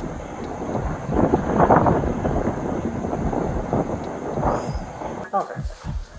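Wind buffeting and rubbing on a body-worn camera's microphone: a dense, uneven rumble and crackle with no steady tone, with faint muffled voices under it.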